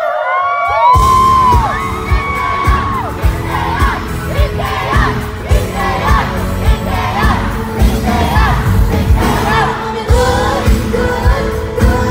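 Live K-pop song played through a concert PA: a female lead vocal over a heavy dance beat, with the drums and bass kicking in about a second in. Recorded from the audience, with crowd noise under the music.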